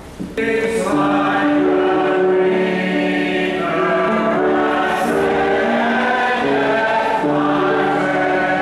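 Congregation singing a hymn together, a full choral sound of long held notes that starts abruptly about half a second in.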